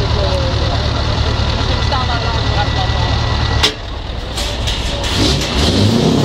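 Diesel truck engine idling with a deep, steady rumble from its side-exit exhaust. A little over halfway through, the sound breaks off with a sharp click and the rumble drops away. Engine sound builds again near the end.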